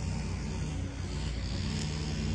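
Steady low drone of a running engine or motor, holding an even pitch throughout.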